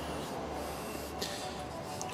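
Quiet, steady background room tone with a low hum and a faint hiss, no distinct event.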